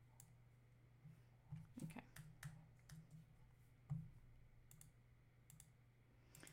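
Faint scattered clicks of a computer mouse, a dozen or so at uneven intervals, over a steady low electrical hum.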